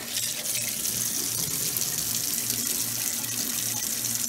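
Kitchen faucet running in a steady stream into a stainless steel sink.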